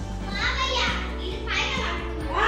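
Young children's voices calling out as they play, twice, over background music.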